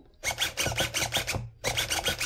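KST CM653 low-profile coreless metal-gear servo whirring as it swings an RC boat's outboard rapidly back and forth, a quick run of short rasping bursts, several a second, with a brief pause about one and a half seconds in.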